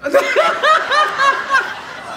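A person laughing close to a microphone: a quick run of about six 'ha' syllables, roughly four a second, that stops a little before the end.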